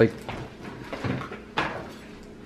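A plain, non-serrated kitchen knife sawing through a crusty baguette on a cutting board, with short scraping crunches and knocks of the blade. The knife is too blunt for bread.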